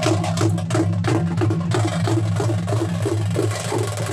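Fast, steady drumming of sharp stick strikes, about five a second, over a low steady hum; a hiss fills in about halfway through. This is traditional drumming for a festival procession.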